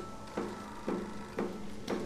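Quiet background score: a soft low note pulsing about twice a second over faint sustained tones.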